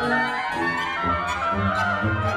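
Chamber orchestra of strings, oboes, horns, bassoon and harpsichord playing a contemporary classical piece, with many overlapping held notes changing every fraction of a second.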